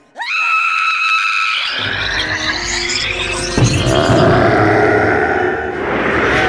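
A person screaming in terror: one long scream that shoots up at the start, is held, then slowly sinks. A low rumbling din and music come in underneath about two seconds in.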